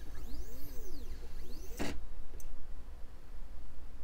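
Stepper motors of a Vevor S4040 desktop CNC whining in pitch sweeps that rise and fall as the gantry speeds up and slows down while tracing a job outline, with one sharp click about two seconds in. The job ends in a crash: the machine was driven past the edge of its travel area.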